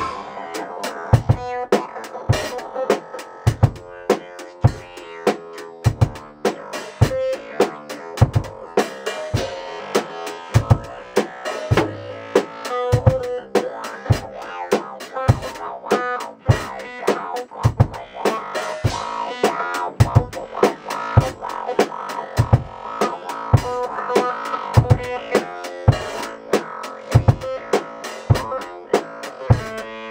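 Live funk jam: an acoustic drum kit keeps a steady beat with an even kick drum, under synth keyboard lines played through talkboxes.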